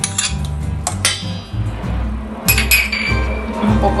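A metal spoon clinking against a stainless steel mixing bowl a few times, the clink a little after the middle ringing longest, over background music with a steady bass line.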